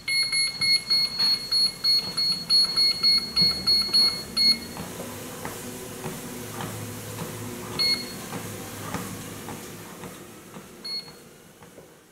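Treadmill console beeping rapidly, about three short high beeps a second for some four and a half seconds, as a finger keeps pressing the speed button. Then the treadmill runs with footsteps thudding on the moving belt, and two single beeps come later on.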